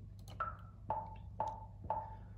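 BandLab software metronome clicking at 120 beats per minute, two clicks a second in 4/4: a higher click on the first beat of the bar followed by three lower clicks.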